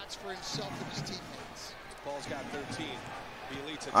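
A basketball being dribbled on a hardwood arena court, with a broadcast commentator talking faintly underneath.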